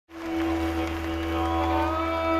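Live Celtic folk band starting a tune: one long held note over a steady low drone, with higher notes coming in about halfway through.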